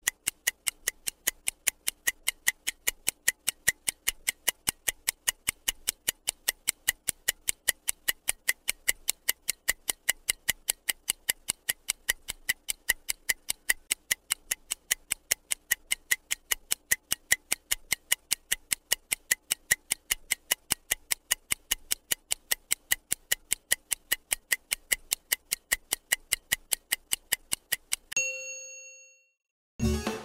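Stopwatch ticking sound effect, a steady run of about four ticks a second counting down the time to answer, ended near the end by a single ringing bell ding that signals time is up.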